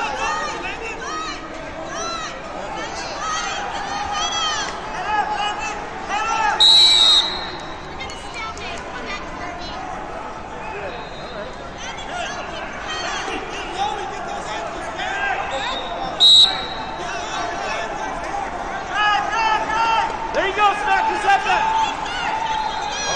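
Overlapping voices of spectators and coaches in a large, echoing hall, broken by two short, loud blasts of a referee's whistle, about seven seconds in and again about sixteen seconds in.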